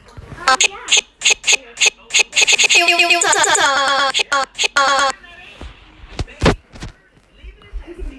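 Playback of a chopped-up voice sample in a Sparta-remix style edit: the sample repeats in short stutters, speeding up until it runs together into one rapid stutter, then cuts off suddenly about five seconds in. A few low thumps follow.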